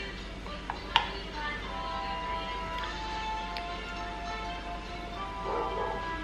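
Soft background music of long held notes, with a single sharp click about a second in.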